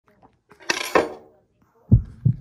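A metal fork clattering against a ceramic plate and tabletop twice in quick succession, ringing briefly, as it is knocked off the plate. A single low thump comes right at the end.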